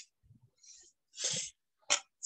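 A person's short, noisy burst of breath about a second in, with faint clicks and rustles around it and a quick breath again near the end.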